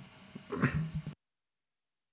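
A man's short stifled cough about half a second in, from what he calls pollen allergies; then the sound cuts off abruptly to dead silence, as if the microphone were muted.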